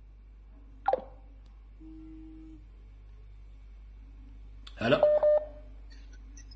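Telephone line sounds: a short falling chirp about a second in, then a steady low tone lasting under a second. Near the end a man's loud "Hello!" comes over a steady beep, as a phone call connects.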